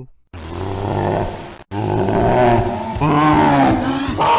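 A deep monster roar from a horror version of Squidward. It comes in two long stretches, broken by a sudden cut about one and a half seconds in.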